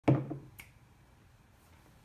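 A sharp click at the very start that rings briefly and dies away, then a fainter click about half a second in, followed by quiet room tone.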